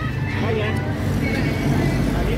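Steady roadside traffic noise with a low engine hum, and faint voices over it.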